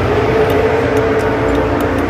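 A race car engine running steadily at high revs: a sustained drone with one held tone that swells slightly partway through.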